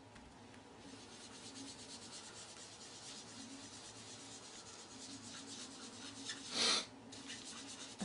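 Foam sponge dauber rubbing ink onto cardstock, a faint soft scrubbing of repeated strokes, with one brief louder swish about two-thirds of the way through.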